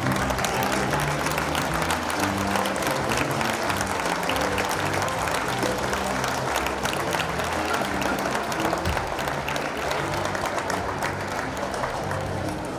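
Audience clapping, with recorded music still playing underneath; the applause thins out near the end.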